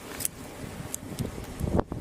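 Rustling and scuffling of clothing and gear close to a body-worn camera's microphone as officers hold a resisting person down, with a few faint clicks and a soft knock near the end.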